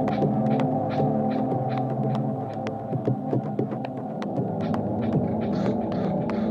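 Ambient techno track: layers of steady low droning tones with a quick, uneven patter of crisp ticks over them.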